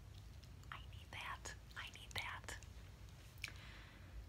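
A woman whispering softly, a few breathy words without voice, between about one and two and a half seconds in, with a couple of faint clicks.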